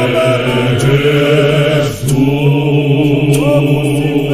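A Zionist church choir singing a Zulu hymn in harmony, voices holding long notes over a steady low part, with a short break between phrases about halfway through.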